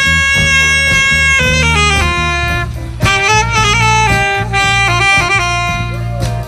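Youth jazz band's alto saxophone section playing: a long held note, then a falling run and quick moving lines, over a steady low accompaniment.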